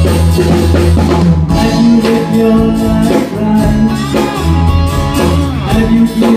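Live band playing loud, continuous music, with electric and acoustic guitars, drums and keyboard.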